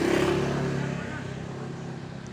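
A motor vehicle's engine running close by, loudest at the start and fading away over about a second.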